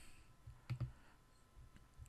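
A computer mouse click, heard as two quick ticks close together a little after halfway.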